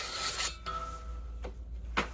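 Cardboard blade sleeve scraping off the toothed steel blade of a Lenox 18-inch PVC/ABS hand saw, a short rasp, after which the thin blade rings briefly with a few steady tones. Two light clicks follow, the second sharper, near the end.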